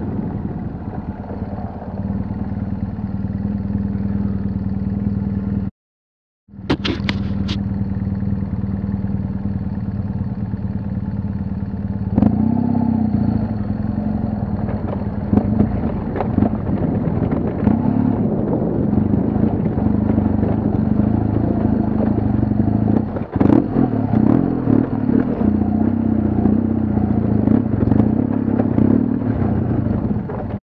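BMW HP2 Enduro's boxer-twin engine running at steady low revs while riding a rough dirt track, with clatter and knocks from the bike over ruts and stones. The sound cuts out completely for under a second about six seconds in, and the engine and clatter get louder from about twelve seconds.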